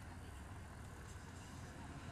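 Road traffic: a steady low rumble of cars on the road.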